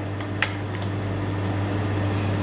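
Steady low room hum with an even hiss, and one light click about half a second in.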